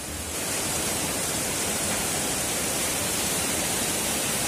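Heavy rain pouring down steadily, swelling up in the first half second.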